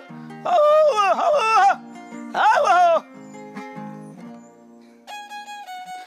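Male décima singer drawing out long, wavering vowels in two phrases over plucked-string accompaniment. The strings then play on alone, and near the end a different piece of music with held notes starts.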